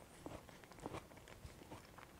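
Near silence with a few faint soft clicks of a person chewing a spoonful of cooked cranberry and apple sauce.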